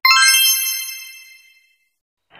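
A bright, high-pitched chime sound effect, struck once and ringing out, fading away over about a second and a half.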